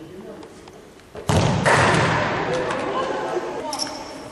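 A futsal ball is kicked hard about a second in, a sudden loud thud that echoes around the sports hall, followed by a couple of seconds of voices shouting and more ball knocks near the end.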